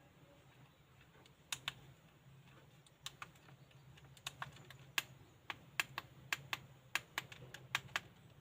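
Sharp plastic clicks of the buttons on a handheld 3D pen being pressed, irregular and often in quick pairs, starting about one and a half seconds in and coming faster towards the end.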